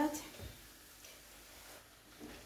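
The end of a spoken word, then faint, soft stirring of cooked eru and waterleaf greens with a wooden spoon in an enamel pot.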